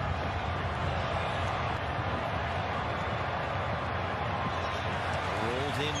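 Steady, even background noise of a football match broadcast's stadium and pitch ambience, heard between commentary.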